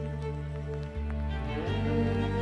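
Background music: slow held notes that change chord about a second in and again near the end.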